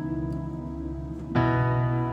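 Digital keyboard with a piano sound playing chords: a C♯ minor 9 chord, the vi chord in E, rings and fades. About 1.4 s in, a new chord over a B bass is struck.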